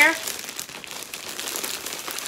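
Clear plastic packaging bag crinkling continuously as it is handled and opened, with a garment inside.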